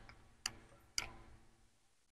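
Two faint computer mouse clicks, about half a second apart.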